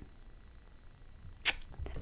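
A quiet pause, then a single quick, sharp intake of breath about one and a half seconds in, followed by a few small mouth clicks.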